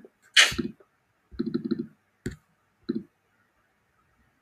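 A woman's short sharp puff of breath, then a brief low vocal murmur, a single soft click and one more short vocal sound.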